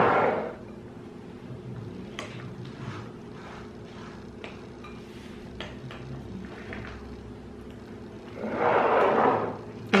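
Metal spoons lightly clinking and scraping in glass dessert bowls: a few faint, scattered ticks over a steady low hum, with a louder scuffing sound near the end.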